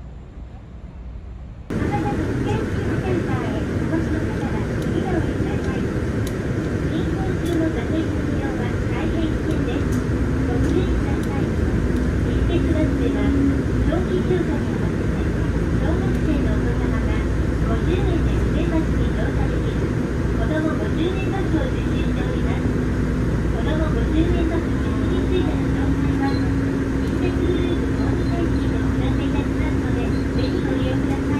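Ride inside a Nishitetsu city bus: steady engine and road rumble with an on-and-off low drone, and indistinct passenger voices underneath. It starts abruptly about two seconds in, after a quieter opening.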